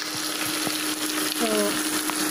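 Chopped vegetables frying in a steel pot: a steady sizzle with a few light clicks as they are tipped and moved, over a steady low hum.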